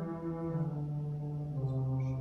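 Wurlitzer theatre pipe organ playing slow, held chords, the bass note stepping down twice.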